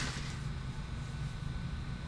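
Steady low hum with faint hiss: background room tone with no distinct event.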